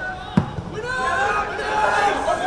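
A football kicked once: a single sharp thump about half a second in, heard over players' voices calling across the pitch.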